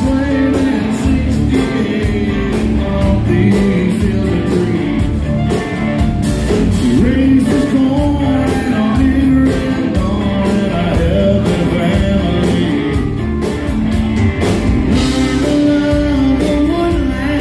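Live country-rock band playing: electric and acoustic guitars, bass guitar and drum kit, with a man singing lead into the microphone. The music is loud and continuous.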